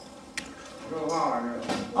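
A person's voice speaking in the second half, after a quiet stretch with a single sharp click about half a second in.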